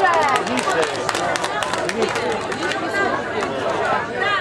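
Several people talking at once, a babble of overlapping voices with no one speaker standing out.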